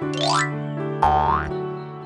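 Cartoon sound effects over a steady children's background-music chord: a short rising swoop right at the start, then about a second in another rising swoop with a brief low thump.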